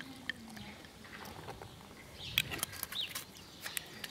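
Prosecco poured from the bottle over ice in a wine glass: faint fizzing and crackling, with a few sharper clicks about two to three seconds in.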